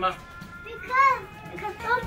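A young child's voice calling out "bang" again and again in play.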